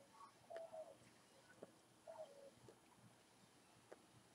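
Near silence with two faint short dove coos, each dropping slightly in pitch, and a few soft ticks.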